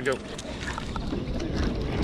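Wind rumbling on the microphone while a spinning reel is cranked to reel in a hooked fish.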